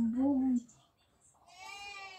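A young child whining without words: a long, steady, low whine that stops about half a second in, then after a short pause a higher-pitched whine that slowly falls.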